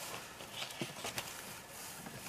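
Light handling noise: a few soft clicks and rustles as a plastic ribbon spool and a sheet of cardstock are handled, with a couple of sharper ticks around the middle.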